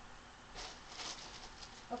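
Soft, brief movement noises from a person moving about, twice: about half a second in and again about a second in.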